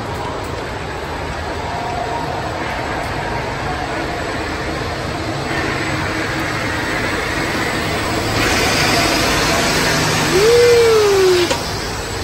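Indoor Ferris wheel turning: a steady rushing rumble that grows louder and brighter in the second half. Near the end a short tone rises and then falls.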